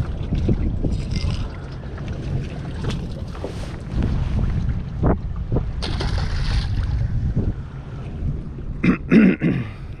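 Wind on the microphone throughout, with a brief water splash about six seconds in as a small halibut is dropped back into the sea.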